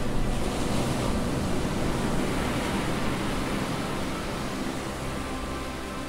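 Ocean surf: breaking waves in a long rush of noise that swells up at the start and slowly dies away, with soft background music underneath.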